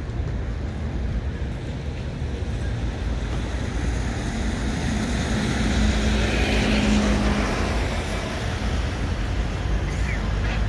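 Steady street traffic rumble, with one vehicle passing: its engine hum and tyre noise build through the middle and fade about eight seconds in.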